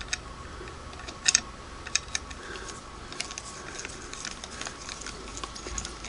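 A few light, scattered clicks and ticks of a screwdriver working a small screw of a Singer 301A sewing machine's lamp shade, with a quick double click about a second in.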